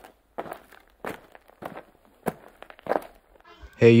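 Dubbed footstep sound effects: about six even steps, roughly one every two-thirds of a second, for a walking figure. A man's voice shouts 'Hey' at the very end.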